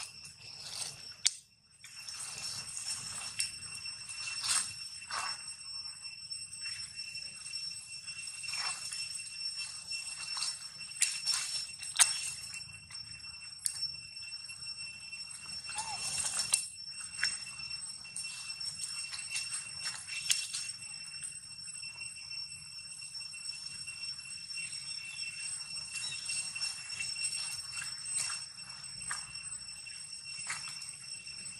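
Steady high-pitched insect drone in three ringing tones, with scattered short sharp sounds, the loudest about twelve seconds in, and a brief cry around sixteen seconds in.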